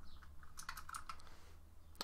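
Faint typing on a computer keyboard: a quick run of keystrokes over the first second or so.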